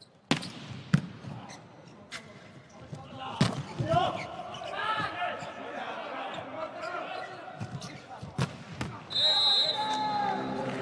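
Volleyball struck hard several times in a rally (a jump serve, passes and an attack), each hit a sharp smack echoing in a large hall, with players' voices calling out in the middle. A referee's whistle blows a little after nine seconds.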